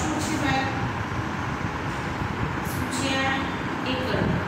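A woman's voice speaking in short bursts near the start and again near the end, over a steady low rumble of background noise.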